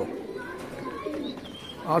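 Tippler pigeons cooing softly in their loft.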